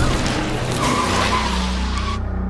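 A loud, harsh rushing noise that starts abruptly and cuts off suddenly just after two seconds, over a low steady drone. This is a horror-trailer sound effect.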